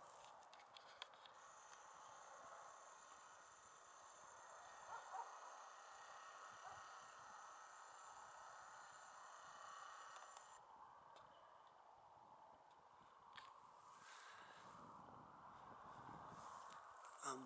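Near silence: faint outdoor ambience, with the faint steady whine of the Sony Cyber-shot HX300's optical zoom motor as the lens zooms in. The whine stops abruptly about ten seconds in, and a few faint clicks follow.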